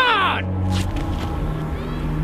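A short, loud cry that falls in pitch at the very start, then low, steady background music.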